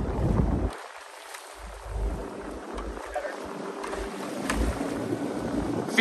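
Wind buffeting the microphone in uneven gusts over the hiss of water from a moving boat.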